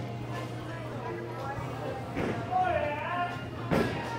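Bowling alley room tone: a steady low hum with faint voices in the background, and one sharp knock near the end.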